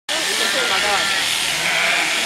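Sheep bleating over the steady buzz of electric shears as a sheep is shorn, with people talking.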